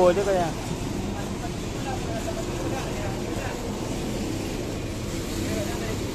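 Distant voices talking over a steady low rumble.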